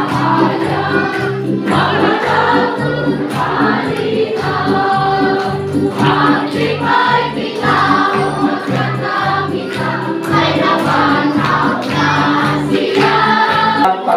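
Church congregation singing a hymn together, with a steady bass beat in the accompaniment.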